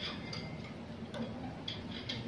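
A few faint, irregular clicks and taps of hands handling a plastic CPR manikin as they are placed on its chest, over low room noise.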